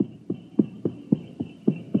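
Horse hoofbeats at a steady trot, about three to four clops a second: a radio sound effect of a horse pulling a carriage or sleigh as it is driven off.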